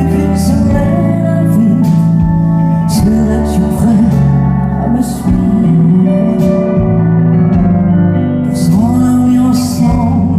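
A woman singing a French song live into a microphone over a band's accompaniment.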